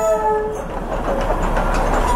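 Diesel locomotive of the Darjeeling Himalayan Railway's narrow-gauge toy train sounding a steady horn that cuts off about half a second in. The locomotive and its coaches then roll past close by with a continuous rail noise.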